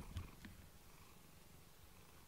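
Domestic cat purring faintly, close to the microphone.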